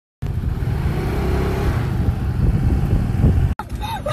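Steady low rumble of a moving vehicle with wind noise on the microphone; it cuts off suddenly near the end.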